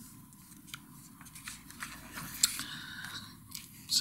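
Paper pages of a large instruction booklet being turned and smoothed flat by hand: faint rustling with a few crisp clicks and crinkles, the sharpest about two and a half seconds in.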